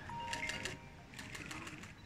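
Camera shutters clicking in two quick bursts, over a faint steady tone.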